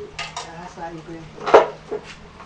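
Metallic clinks and knocks from a chop saw being handled, with a sharp clank about one and a half seconds in that is the loudest sound; a short spoken word falls in between.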